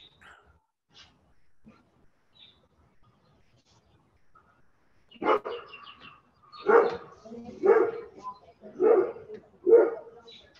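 A dog barking outside, five barks about a second apart starting about halfway through, picked up over a video-call microphone.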